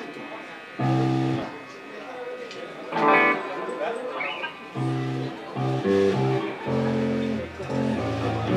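Electric guitar and bass guitar playing the opening of a song live: a held chord about a second in, a louder chord about three seconds in, then a steady run of short notes with the bass underneath from about five seconds in.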